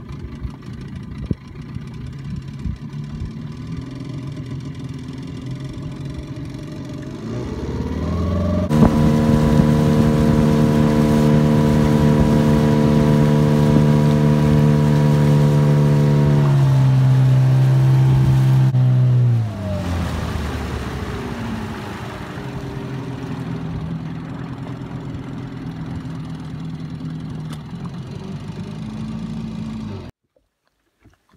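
Small outboard motor on an inflatable boat running at low throttle, then opened up about eight seconds in to a loud, steady high note at speed. About ten seconds later it is throttled back, the pitch falling, and it runs low again.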